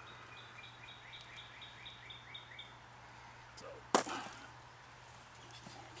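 A bird calling: a quick run of about a dozen high chirps, four or five a second, over the first couple of seconds. About four seconds in comes a single sharp knock.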